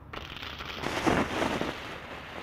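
Hydrogen peroxide and hydrazine combusting spontaneously in a miniature rocket motor: a violent, crackling, hissing burst that starts just after the beginning, swells about a second in and eases off near the end.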